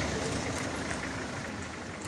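Steady background noise with no distinct events, a low rumble and hiss that eases slightly in level.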